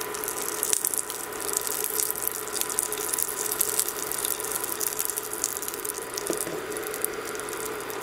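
Hot oil sizzling steadily in a stainless steel pan of tempering (mustard seeds, dried red chili, curry leaves and hing), with a constant fine crackling.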